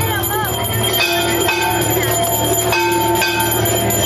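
Temple bells struck over and over during an aarti, about every half second, their metallic ringing overlapping, with devotees singing the aarti hymn.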